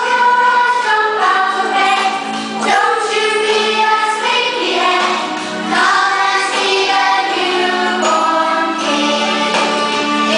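A choir of young children singing a song together over a steady held accompaniment note.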